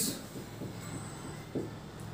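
Marker pen writing on a whiteboard, faint, with a thin high squeak about a second in, over a low steady hum.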